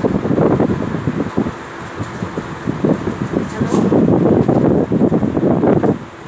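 Indistinct voices talking, a loud jumble with no clear words.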